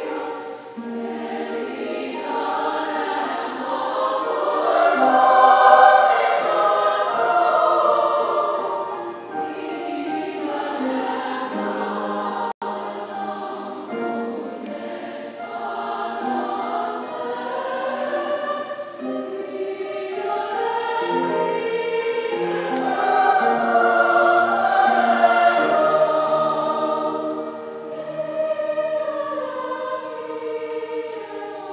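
A large mixed choir singing sustained chords, swelling louder about six seconds in and again near twenty-four seconds, with a momentary dropout in the recording near the middle.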